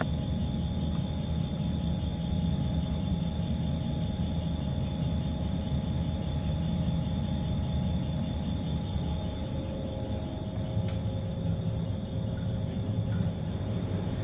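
Steady low rumble with a faint high whine and hum at the landing of a Schindler 3300 AP machine-room-less passenger lift while the car is called and arrives, with a single click about eleven seconds in.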